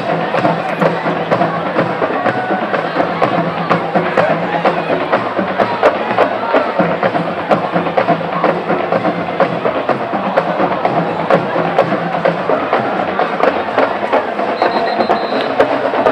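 Band music with a busy drum beat, heard over the general noise of a stadium crowd.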